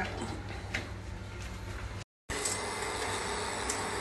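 Steady low hum with faint background noise, broken by one light click under a second in and a brief total dropout about two seconds in.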